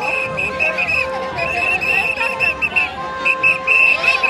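A whistle blown over and over in short blasts and a few longer held notes, over music and crowd chatter.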